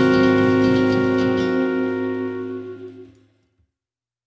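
A swing jazz band's final held chord ringing out. It has a few percussive hits in the first second and a half, then dies away to silence a little over three seconds in.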